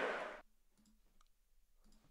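The tail of a chant-like outro sting fades and cuts off under half a second in, leaving near silence with a few faint clicks.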